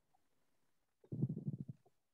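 Silence, then about a second in a brief, low, muffled voice sound lasting well under a second.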